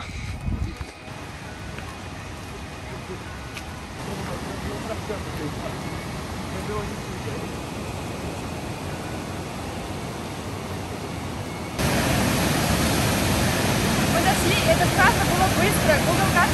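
Rushing water of the Mumlava waterfall and its rapids, a steady noise that jumps suddenly louder about twelve seconds in; up close it is very strong.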